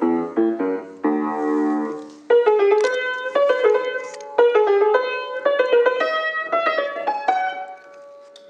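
Piano playing: repeated chords for about two seconds, then a quicker line of single melody notes over held low notes. The player calls the piano out of tune.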